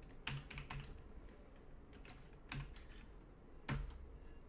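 Computer keyboard keys being typed in short bursts: three quick keystrokes shortly after the start, two more in the middle, and a single louder keystroke near the end.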